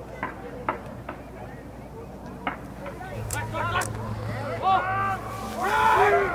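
A few isolated sharp knocks, then from about halfway several people shouting and calling out at once, growing louder toward the end.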